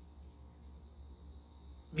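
Faint background: a steady low hum with a thin, steady high-pitched whine. A voice starts speaking at the very end.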